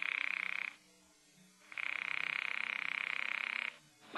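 Telephone ringing on the line, a buzzing ring: one ring ends just after the start, then after a pause of about a second another ring lasts about two seconds. The call is ringing unanswered.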